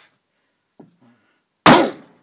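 A single hard hammer blow on a CeramicSpeed silicon nitride ceramic bearing ball lying under a cloth on a hardened steel block, struck as a hardness test: one sharp, loud impact near the end, with a brief ringing tail.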